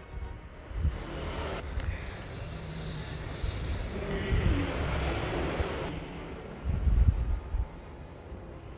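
Background music under low rumbling whoosh sound effects: a noisy swell through the middle, then a heavier low rumble near the end.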